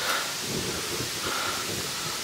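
Steady hissing rustle with soft footfalls of someone walking.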